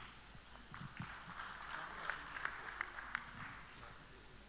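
Faint, scattered clapping from an audience in a hall, a light patter of claps that swells and then fades.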